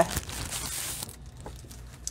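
A sheet of foil designer paper being slid out of its pack, rustling for about the first second, followed by a few light paper taps.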